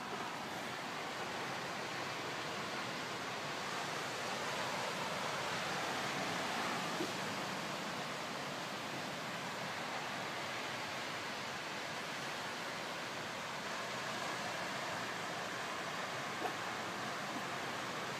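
Steady, even rushing outdoor noise that swells a little a few seconds in and eases off again, with a couple of faint ticks.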